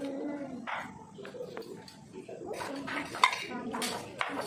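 Kitchen knife chopping on a wooden chopping board: a series of sharp knocks, a few spaced out at first, then coming quicker in the second half.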